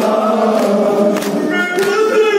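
A crowd of men chanting a Kashmiri noha, a Muharram lament, together in unison, kept in time by rhythmic chest-beating (matam) at about one stroke every 0.6 seconds. A higher voice comes in near the end.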